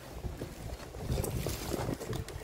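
Crinkling paper and cardboard gift boxes being handled, with scattered light clicks over a low, uneven rumble.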